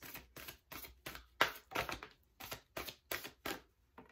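A deck of tarot cards being shuffled by hand, the cards flicking and slapping against each other in quick, uneven strokes, about three or four a second.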